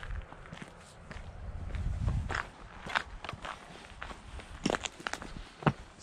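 Footsteps through dry grass and brush, with irregular sharp snaps and crackles of stems and twigs underfoot.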